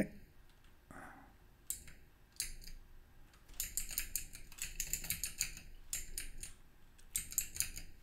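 Typing on a computer keyboard: irregular bursts of quick keystrokes, a few scattered strokes at first, then denser runs through the middle and again near the end, as a terminal command is entered.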